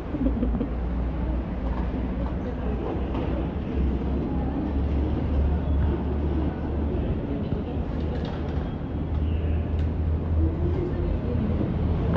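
Steady low rumble of a covered car park, with people talking indistinctly in the background and a few short clicks and knocks of luggage being handled.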